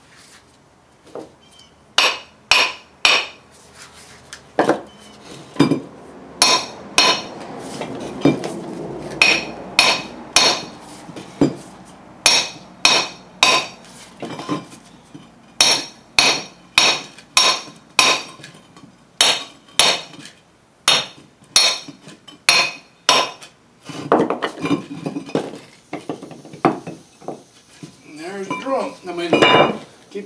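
Hammer blows on a steel socket used as a drift against a 1985 Chevy K10 front brake rotor, driving the hub out of the rotor: a long run of sharp metallic strikes, about one to two a second, each with a short ring. Near the end the strikes give way to irregular metal clatter.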